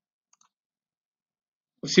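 Near silence in a pause of speech, broken by two faint, closely spaced clicks about a third of a second in; a man's voice starts again near the end.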